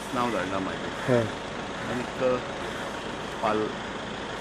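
A man speaking in short, broken phrases over a steady background hum of road traffic.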